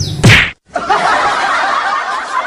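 A low engine rumble with birds chirping, broken about a quarter second in by a loud, sharp slap-like hit. The sound then drops out for a moment and gives way to a steady, busy jumble of small wavering voice-like sounds.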